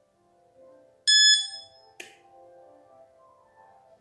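A phone control app's button-press sound: a short, bright electronic ding about a second in, followed a second later by a single sharp click.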